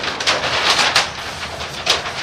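A large sheet of flip-chart paper being lifted and turned back over the top of the pad, rustling throughout, with a sharper crackle just before the end.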